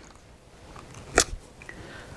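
A single sharp plastic click about a second in, followed by a couple of fainter ticks, from handling the Vivax-Metrotech VM-850 receiver as it is turned upright.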